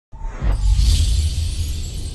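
Intro music sting for a logo animation: a sudden deep bass hit right at the start, with a bright, glassy high sweep rising over it about a second in.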